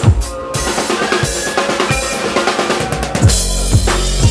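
Live drum kit played hard, snare and cymbals over a loud electronic backing track. About three seconds in, a deep sustained bass and kick drum come back in.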